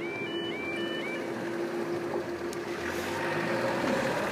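Level crossing warning alarm sounding in a repeating pattern of high tones, cutting off about a second in, while the barriers rise with a steady hum from their mechanism that stops just before the end. A road vehicle's engine builds up near the end as traffic starts across.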